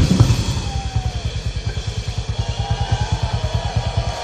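Rock drum kit played solo in a live concert: a fast, even run of low drum strokes, about ten a second, under a wash of cymbal.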